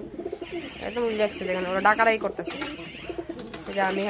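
Domestic pigeons cooing, a run of low pitched calls that bend up and down.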